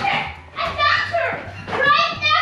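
Young children's high-pitched voices talking and calling out, with a faint low steady hum underneath.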